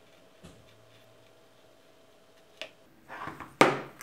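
Mostly quiet leather-trimming work with a faint tick early on; near the end a short rustle and then a sharp knock, the loudest sound, as the knife is set down on the cutting mat.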